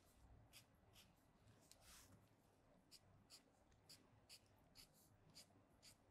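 Felt-tip marker drawing short strokes on pattern paper, faint, about one to two strokes a second at uneven spacing, with one longer stroke about two seconds in.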